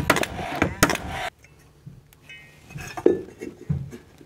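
A Paslode cordless nailer shooting nails through a steel joist hanger into an LVL ledger: a few sharp shots over a steady whir of the tool, which stops suddenly a little over a second in. After that come faint metallic clinks of the hanger being handled and set against the wood.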